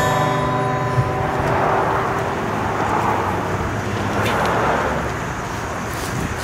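The last acoustic guitar chord rings out and fades. Then a car passes on the nearby road, its tyre and engine noise swelling and dying away over a few seconds.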